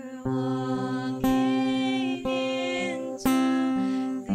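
Slow worship song: female voices singing long held notes over an acoustic guitar, with a chord struck about once a second.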